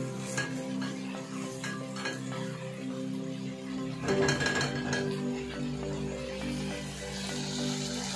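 Background music with held tones, over a silicone spatula stirring chicken karahi in a non-stick pan, giving a few light scrapes and knocks near the start and about four seconds in.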